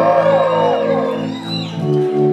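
Live rock band playing an ambient instrumental passage: swooping, gliding lead tones that sink in pitch and fade about a second and a half in, over held low keyboard notes. A new sustained chord comes in near the end.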